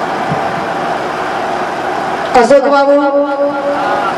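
A steady noisy hubbub, then about two and a half seconds in a woman's voice over a microphone holds one long, level note for about a second and a half.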